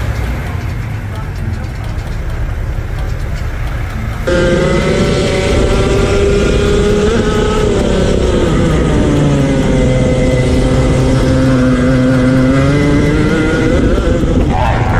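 Racing kart engine heard onboard, running at high revs: its whine sinks slowly over several seconds, then climbs again near the end. For the first four seconds before it starts there is only a duller low rumble.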